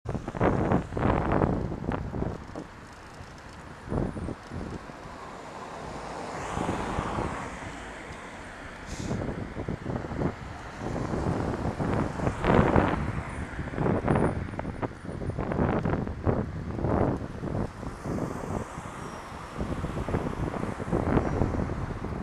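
Wind buffeting a moving rider's camera microphone in uneven gusts, over the noise of road traffic as a car passes close by.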